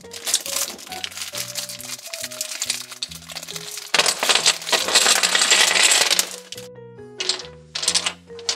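A pile of domino tiles clattering onto a table as they are tipped out of a plastic bag: a dense rush of clicks, loudest about four to six seconds in, dying away soon after. Background music plays underneath.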